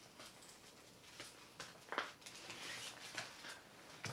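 Faint rustling and small clicks of a trading-card promo pack's packaging being handled and worked at, with one sharper click about two seconds in.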